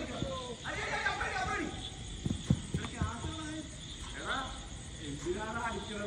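People's shouts and calls during a cricket game, several short high cries in turn. A couple of sharp knocks come about two and a half seconds in, the second the loudest sound.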